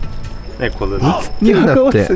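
A steady high-pitched insect trill of crickets, which drops out a little over a second in, under men's voices talking.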